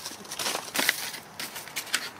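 Plastic mailer bags and paper packaging rustling and crinkling in irregular crackles as a hand digs through a full garbage bag and pulls out an empty box.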